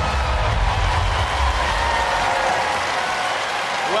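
Studio audience cheering and applauding, with a low rumble underneath that stops a little past halfway.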